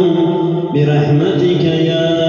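A man's voice chanting a melodic recitation through a handheld microphone, holding long sustained notes that step in pitch, with a short break for breath about three-quarters of a second in.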